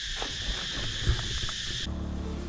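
A steady, high-pitched insect chorus with a few faint low knocks. It cuts off abruptly just before the end as music starts.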